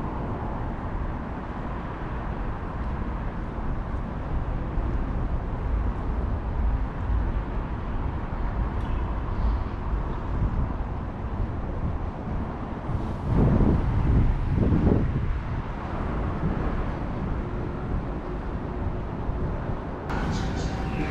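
Steady low rumble of city road traffic, swelling louder for a couple of seconds about two-thirds of the way through.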